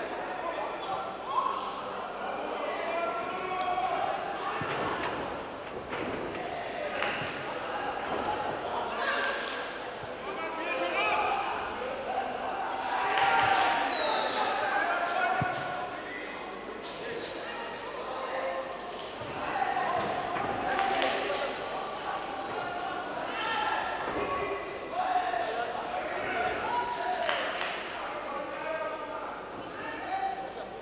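Kickboxing strikes landing: gloved punches and kicks make a string of sharp slaps and thuds at irregular moments, over voices shouting, with the echo of a large hall.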